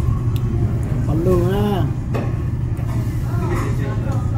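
Steady low rumble of restaurant background noise, with a short voice a little over a second in and faint voices near the end.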